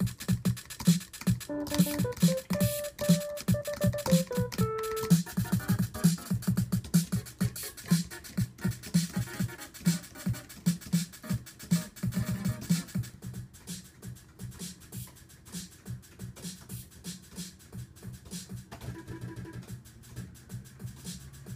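A rhythmic beat of deep kick-drum thumps and hi-hat ticks, two to three a second, with a short melody of held notes a couple of seconds in; the beat gets quieter about two-thirds of the way through.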